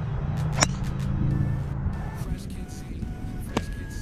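Two sharp golf club strikes on the ball: a driver off the tee about half a second in, and an iron shot from the fairway just before the end. Both sound over a steady low rumble.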